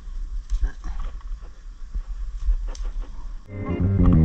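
Bean leaves rustling, with a few soft snaps as green bean pods are picked off the vine by hand, over a steady low rumble. Music fades in near the end.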